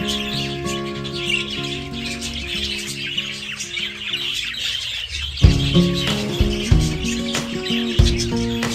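A large flock of budgerigars chattering and chirping continuously, under background music whose held notes give way to a beat about five and a half seconds in.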